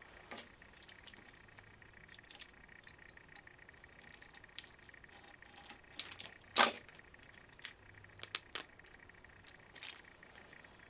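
Small clicks and crinkles from a utility knife cutting open a foil epoxy glue packet on a workbench, with one sharper crackle about two-thirds of the way through and a few lighter ticks after it.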